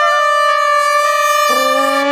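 Small brass ensemble of bell-up horns and a trumpet holding one long, loud chord. A lower note joins about one and a half seconds in.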